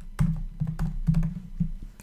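Typing on a computer keyboard: a quick run of keystrokes, each a short click with a low thud, as a short name is typed in.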